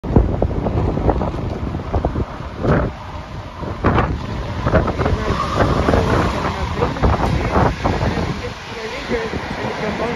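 InterCity train hauled by an electric locomotive passing through the station, with a loud, uneven rumble and clatter of wheels on the rails. Wind buffets the microphone.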